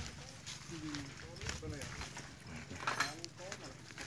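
Quiet, indistinct talk from people nearby, in short faint phrases.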